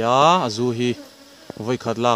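Honeybees buzzing close to the microphone, with bees flying past so the buzz swells and glides up and down in pitch. There is a brief lull about a second in before the buzz returns.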